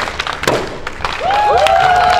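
A thrown ball hits the target with a thud about half a second in, amid hand clapping; about a second later the crowd breaks into louder cheering and applause.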